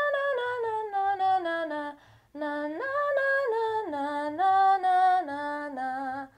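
A woman sings a scale on 'na', one short syllable per note, stepping down from the top to the octave below. After a brief break about two seconds in, she sings a second run of notes that leaps up and steps back down.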